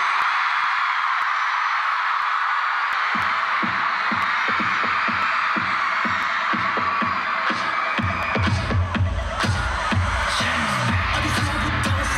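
Concert crowd screaming steadily over a pop track's intro through the arena sound system: a quick pulsing beat comes in about three seconds in, and a heavy bass line joins about eight seconds in.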